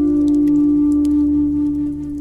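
A Native American flute holds one long, steady note over a low sustained drone, in meditative music.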